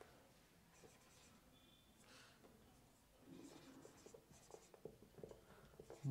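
Faint squeak and scratch of a marker pen writing on a whiteboard. The short strokes come sparsely at first and thicker through the second half.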